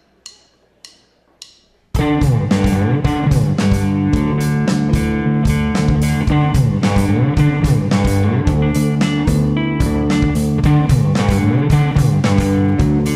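Three sharp stick clicks about half a second apart, the end of a count-in, then a rock band comes in all at once about two seconds in: electric guitars, bass guitar and drum kit playing loud and steady.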